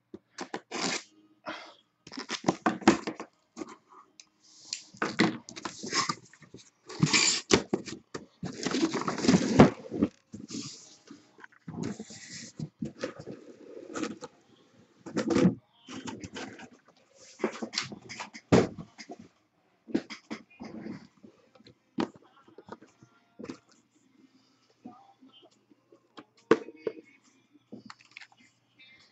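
A cardboard shipping case being cut and torn open by hand: irregular bursts of ripping, scraping and rustling cardboard, loudest and densest about halfway through. Near the end, shrink-wrapped hobby boxes are knocked and slid against one another as they are stacked.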